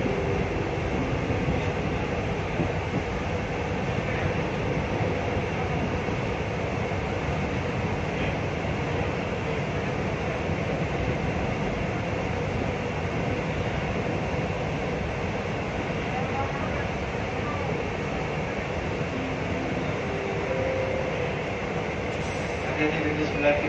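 Electric commuter train running steadily from inside the driver's cab, an even rumble of wheels and running gear on the track as it comes alongside a station platform.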